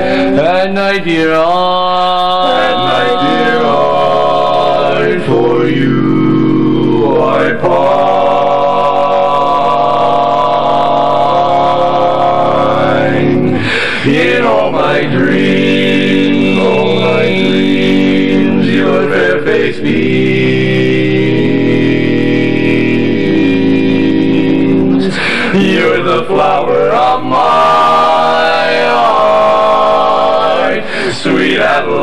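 Male barbershop quartet singing a cappella in close four-part harmony, with long held chords and short breaks between phrases.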